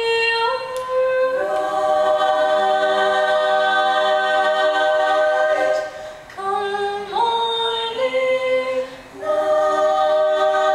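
Women's a cappella group singing long, held chords in close harmony, the chord changing in steps, with short breaths between phrases about six and nine seconds in.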